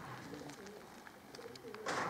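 Racing pigeons cooing faintly, several short, soft calls.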